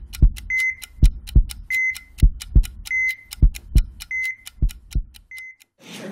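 Intro sound effect of a slow heartbeat, a pair of low thumps about every 1.2 seconds, each followed by a short high heart-monitor beep, over a ticking clock. It cuts off near the end.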